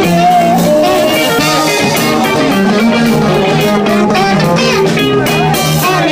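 Live rap-funk band playing an instrumental passage: a guitar melody over bass and drum kit, loud and steady.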